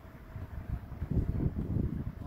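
Wind buffeting the microphone: an uneven low rumble that grows louder about a second in.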